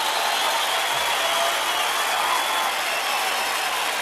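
A steady, hiss-like rushing noise at an even level, with no rhythm or separate strikes.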